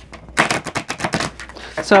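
A deck of cards being shuffled by hand: a rapid flurry of crisp card clicks lasting about a second and a half.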